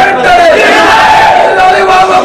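A crowd of men shouting at once, many voices overlapping without a break.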